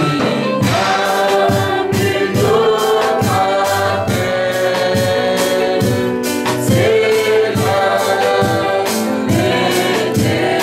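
Gospel worship song: a choir of voices singing sustained lines over a band with a steady percussive beat.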